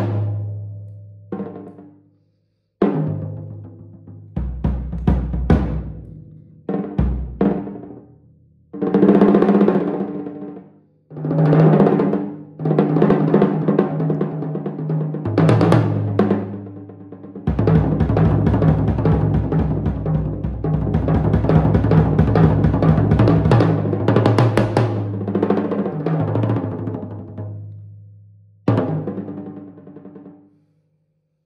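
Drum kit played with felt mallets in an improvised solo: separate strikes on toms and cymbals that ring and die away between phrases. Through the middle, a long, loud roll across the toms and cymbals builds and then fades, with one more hit just before the end.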